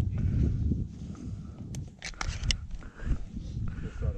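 Footsteps in dry grass with wind and handling rumble on a body-worn camera's microphone, and a quick run of sharp clicks about two seconds in.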